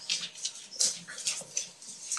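Papers rustling and being shuffled at the table, in short irregular bursts.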